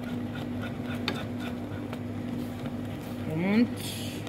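Wire whisk stirring and scraping thick, boiling chocolate truffle cream around a non-stick pan, over a steady low hum, with a sharp click about a second in. A brief rising vocal sound comes near the end.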